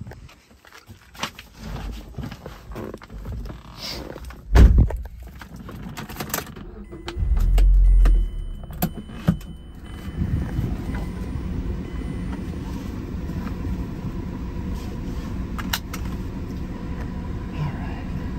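Keys and small clicks, a heavy thump, then the 2008 Mazda MX-5 Miata's four-cylinder engine starts with a short, loud flare of revs about seven seconds in and settles into a steady idle for the rest of the time.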